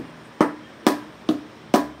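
Homemade drum made from a paint can with a cardboard lid, struck with a pair of sticks: four even beats, about two a second, each with a short dull ring.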